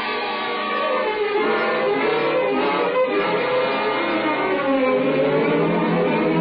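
Orchestral string music played as a bridge between scenes of the radio drama, sustained and continuous.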